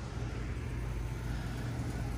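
Steady low rumble and hum of outdoor background noise, with no distinct events.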